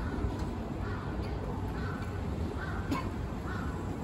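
A crow cawing about five times, roughly once a second, over a steady hum of city street traffic, with a short sharp click near the end.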